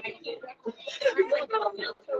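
Speech only: people talking casually, with laughter.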